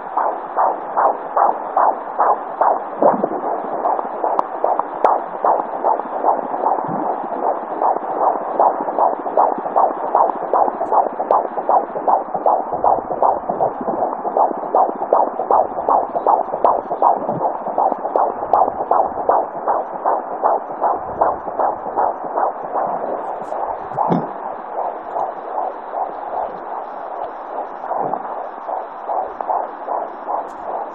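Fetal heartbeat picked up by a handheld fetal Doppler at 19 weeks of pregnancy: a fast, regular galloping whoosh-beat through the device's speaker, with a few low rubbing thumps as the probe shifts on the belly.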